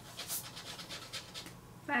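A dog panting in quick, soft breaths, about five a second.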